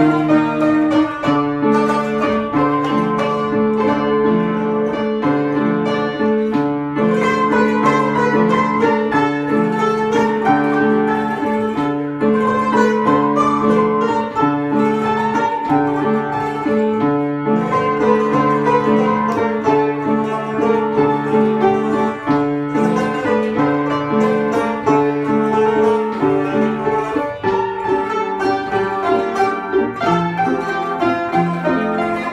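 An upright piano and an Azerbaijani tar playing an instrumental piece together: the piano keeps up a repeating low accompaniment while the plucked tar carries the melody.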